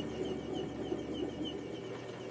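Small hobby lathe parting off a knurled tool-steel knob with a thin parting blade. The cut runs steadily, with a faint high chirp repeating about five times a second.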